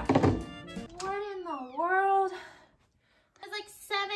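A few knocks of hard plastic Mini Brands capsules being handled on a table. Then a long voice call whose pitch dips and rises, a short silence, and a drawn-out spoken question.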